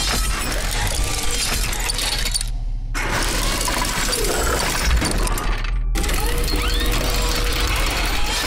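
TV show intro vignette: music with a steady heavy bass under dense, noisy sound effects. The upper sound cuts out briefly twice, about two and a half seconds in and near six seconds, leaving only the bass.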